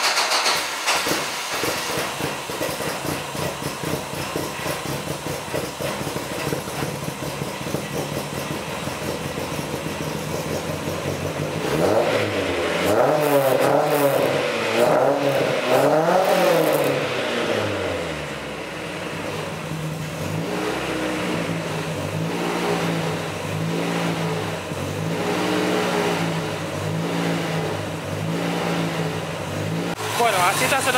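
Chevrolet Corsa's 2.0 8-valve four-cylinder engine heard from behind at the tailpipe, running through a newly fitted exhaust manifold. About twelve seconds in it is revved several times in quick succession, the pitch climbing and falling; from about twenty seconds the engine speed rises and falls in a steady rhythm.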